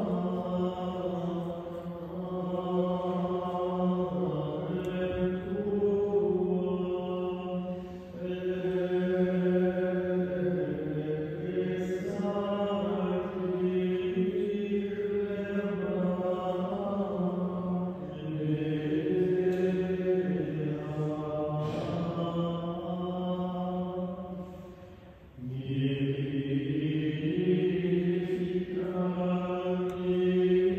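Monks' voices chanting a slow liturgical melody, long held notes stepping from pitch to pitch, with a brief pause for breath near the end.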